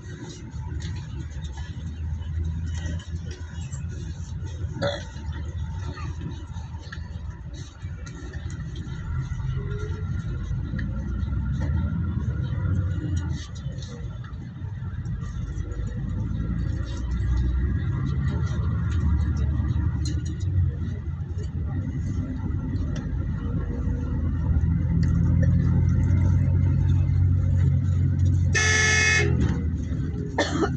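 Road noise of a moving vehicle driving along a road with traffic, a steady low rumble that grows louder in the second half. A vehicle horn honks once, for about a second, near the end.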